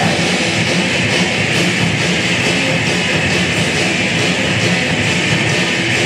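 Live rock band playing an instrumental passage on electric guitars, bass guitar and drum kit, with a steady drum beat.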